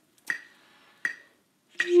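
Metronome clicking a steady beat, three clicks about three-quarters of a second apart, the count-in for a long-tone exercise. A held wind-instrument note on concert F begins right at the end.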